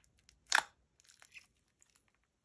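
Yellow slushy (frosted icee-type) slime crackling and popping as fingers press into it and begin peeling it up from its plastic tub: one sharp, loud pop about half a second in, then a few faint crackles.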